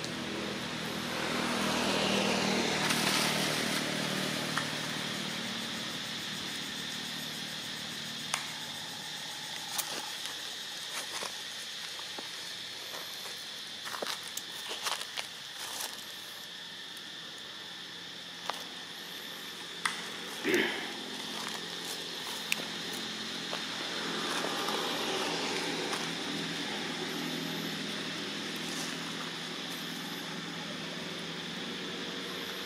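Outdoor ambience: a motor vehicle passes, swelling and fading in the first few seconds, over a steady high hum, with scattered sharp clicks and a short louder sound about twenty seconds in.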